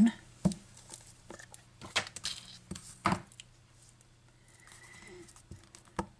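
A few light clicks and knocks of a plastic ink pad case being opened and an acrylic-block rubber stamp being tapped onto the ink pad, the loudest knock about three seconds in.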